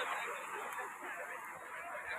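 Sea waves washing in over a rocky shore: a steady rush of surf.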